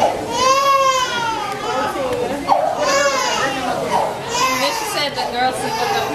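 Young children's high-pitched voices: drawn-out calls and whines, several in a row, amid people talking.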